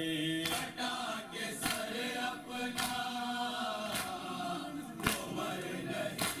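A crowd of men chanting a noha (Shia mourning lament) in unison, kept in time by matam. Their hands strike their chests together about once a second, giving a sharp slap on each beat.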